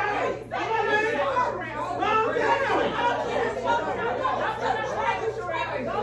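Many people talking over one another in a crowded room: overlapping party chatter with no single voice standing out.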